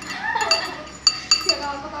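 Metal spoon clinking against a ceramic soup bowl: four ringing clinks within about a second, the second the loudest.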